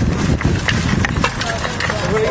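Small stones and bits of brick rattling and clicking against a wooden-framed sifting screen as soil is shaken and picked through by hand, a quick run of knocks over a steady low rumble.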